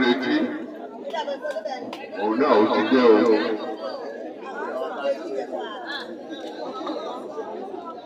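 Several people talking at once: overlapping chatter, loudest at the start and again about two to three seconds in.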